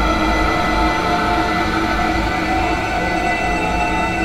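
Dark ambient drone music: many sustained, steady tones layered over a constant low rumble, with a rail-like metallic texture.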